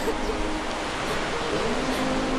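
Steady rushing noise of sea surf and wind. A soft, low, held tone comes in near the end.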